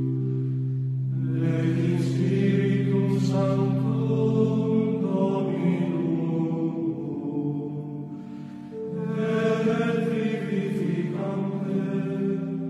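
Gregorian-style chant: slow, sustained sung lines over a held low drone, with more voices joining about a second in and a short dip in level about eight and a half seconds in.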